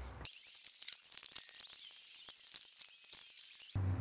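Fast-forwarded, pitch-raised audio of a wooden plant pyramid being assembled: faint, high-pitched chirps and many rapid small clicks, with no low end.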